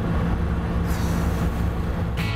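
The two-litre straight-six of a 1970 Triumph GT6+ running steadily at a constant cruise, heard from inside the small cabin, with a brief hiss about halfway.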